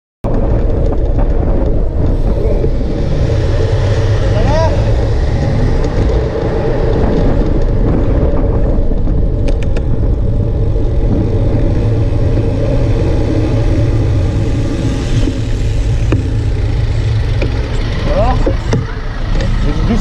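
City street traffic heard from a moving bicycle: car engines and tyres under a steady low rumble of wind on the microphone.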